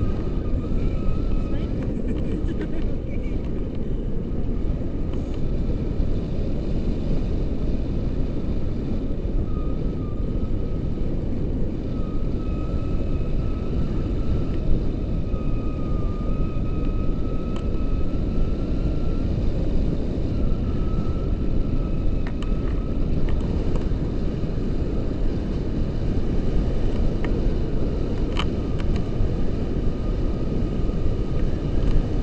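Wind rushing over the camera microphone of a paraglider in flight, a steady low rumble, with a faint thin wavering tone that comes and goes.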